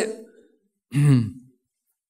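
A man's single short laugh about a second in, one brief voiced burst falling in pitch, close to the microphone, just after the end of a spoken word.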